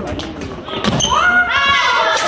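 Badminton rally: a few sharp racket-on-shuttlecock and footfall knocks, then from about a second in, loud raised voices of players calling out over each other, rising in pitch.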